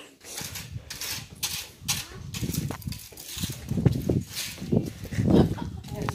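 A plastic muck scoop scraping over a concrete barn floor, pushing manure in a run of rough strokes. Heavier, low rough sounds run through the second half.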